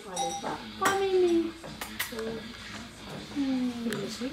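A few brief wordless voice sounds, with sharp clicks or clinks in between.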